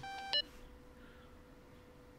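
Smartphone incoming-call tone: a brief electronic beep that cuts off within the first half second, after which there is only a faint steady hum.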